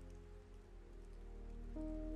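Quiet, soft ambient music of held, sustained chords over a faint steady light-rain sound, with a new higher note coming in near the end.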